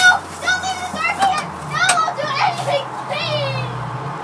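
Indistinct high-pitched children's voices, with a low steady hum coming in about halfway through.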